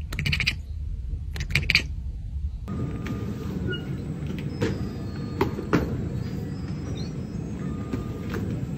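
A cat gives two short vocal bursts in the first two seconds. Then a baggage carousel runs with a steady low rumble and a few knocks.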